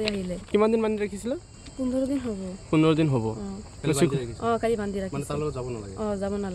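A person speaking in short phrases, over a steady high chirring of crickets.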